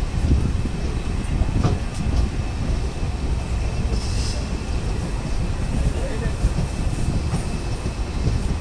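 Steady rumble and faint clatter of a passenger train's coach wheels on the rails, heard from the open doorway as the train runs into a station.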